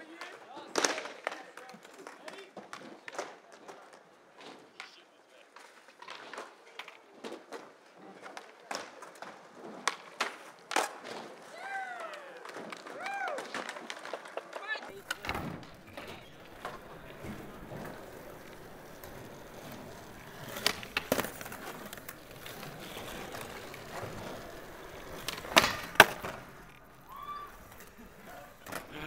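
Skateboards rolling on concrete, with scattered sharp clacks of boards popping and landing. The loudest clacks come late on.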